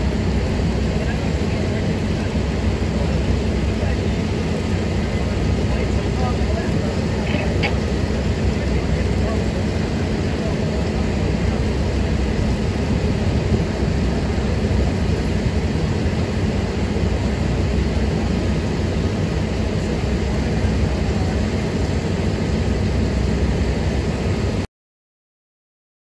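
Steady low engine drone, most likely a fire engine running to supply the hose lines, with people talking faintly behind it.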